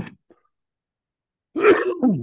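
A man clearing his throat once, loudly, near the end, after a brief vocal sound at the start and a silent gap.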